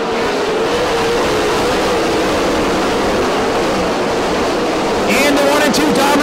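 A pack of 410 winged sprint cars' V8 engines running hard on the dirt oval, a dense, steady engine din with one wavering engine note, as the field comes back to green.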